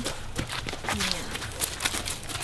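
Running footsteps on a path covered in dry leaves, with a short voice sound in the middle.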